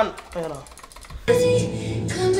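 Computer keyboard typing in a quiet stretch, then a song starts playing about a second and a quarter in.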